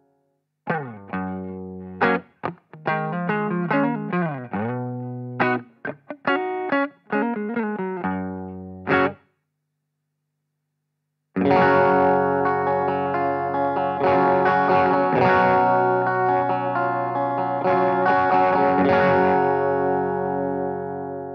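Electric guitar (Fender Stratocaster) played through a blackface Fender Bassman 50-watt tube head's Bass Instrument channel, with separate ringing chords and notes and short gaps between them. The playing stops for about two seconds while the channel volume is adjusted, and from about eleven seconds in it comes back denser, brighter and more continuous.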